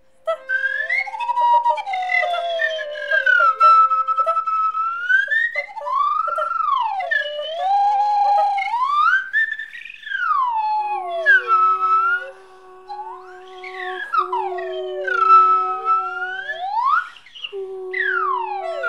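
Whistle tones sliding smoothly up and down in wide swoops over held melodica notes. A lower steady melodica note comes in about eleven seconds in and holds under the glides.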